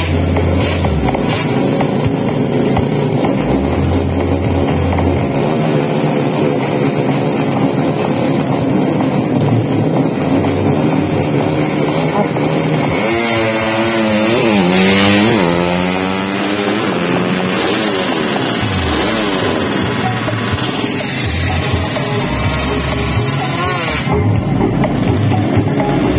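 Drag-racing motorcycle accelerating hard off the start line about 13 seconds in. Its revs climb, drop sharply and climb again over the next few seconds, over a constant background of other engines and loudspeaker music.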